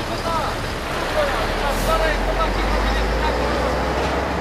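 An excavator's diesel engine running steadily with a low rumble that grows a little stronger in the second half.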